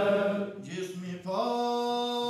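A man's voice singing a religious chant without instruments in long held notes. The first note fades about half a second in, and after a few quieter, lower notes a new, higher note rises in about a second and a half in and is held.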